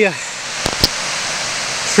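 Steady rush of a creek's cascades over rocks, with two sharp clicks close together under a second in.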